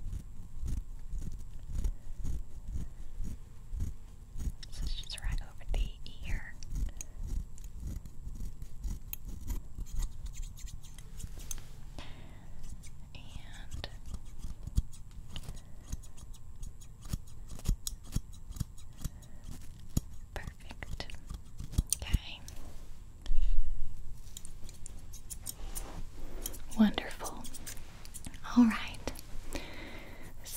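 Hair-cutting scissors snipping close to the microphone: a long run of quick, crisp snips, with a single low thump about two-thirds of the way through.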